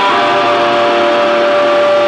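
Live rock band at high volume: an electric guitar holds a distorted chord that rings steadily, several tones sustained with little change.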